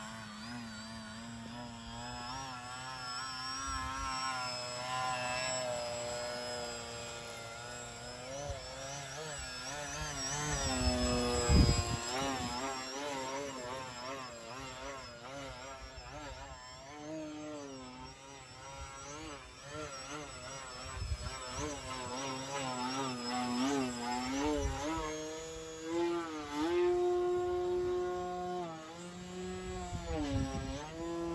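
Flex Innovations Yak 55 RC aerobatic plane's brushless electric motor and propeller whining overhead, the pitch rising and falling continuously with the throttle through its manoeuvres. It is loudest about twelve seconds in and holds a steadier tone near the end.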